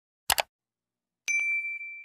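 Sound effects of a subscribe-button animation. A quick double mouse click comes about a third of a second in, then a bright bell ding a little past the middle, ringing on one high tone and fading away.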